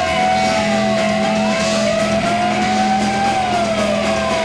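Electric guitar feedback and noise on a rock stage: one steady high tone held throughout, with other tones sliding slowly up and down across it, over a low steady amplifier hum.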